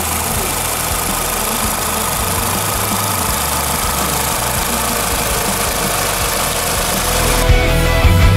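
Volkswagen Vento's 1.6-litre four-cylinder petrol engine idling steadily, heard with the bonnet open.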